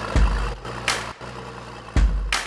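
Toyota 105-series Land Cruiser's engine running slowly near idle as the truck crawls past on a rocky track, with a low thump just after the start and another near the end, and one sharp click in between.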